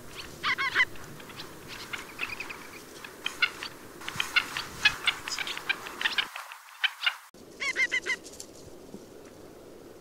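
Ruff (Calidris pugnax) giving short calls in quick clusters of a few notes while feeding. About seven and a half seconds in comes a quick run of about five alarm notes.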